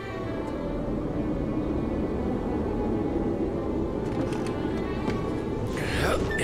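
Rushing, howling wind of a snowstorm, laid in as a sound effect with dark music beneath, building slowly in level. A brighter burst of sound comes just at the end.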